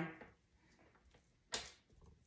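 A single short knock about one and a half seconds in, otherwise a quiet room.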